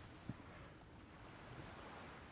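Near silence: faint outdoor background hiss, with one small click about a third of a second in.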